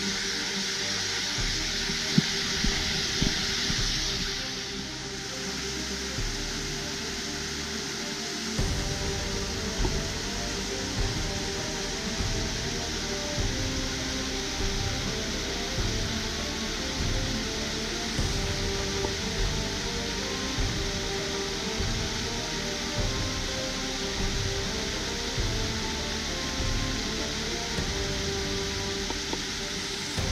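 Steady rushing of a small waterfall cascading over a rock slab, under background music; a low beat joins the music about eight seconds in.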